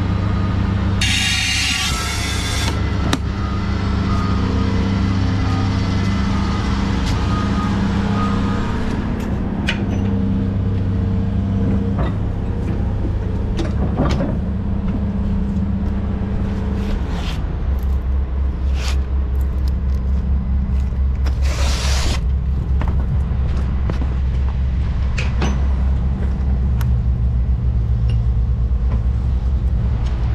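Dump truck's diesel engine idling steadily, with a loud hiss of released compressed air about a second in lasting under two seconds, and a second short hiss a little past two-thirds of the way through. The engine note changes about halfway through.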